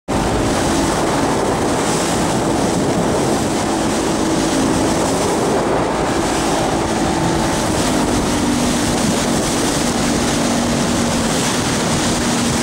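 Motorboat engine running steadily at speed under a dense rush of wind and churned water; the engine's faint hum steps down slightly in pitch a little past halfway.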